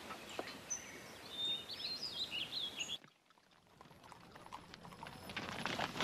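Birds chirping over a faint outdoor ambience, cut off suddenly about halfway through. After a brief silence, the hoofbeats of a group of ridden horses on dry ground fade in and grow louder.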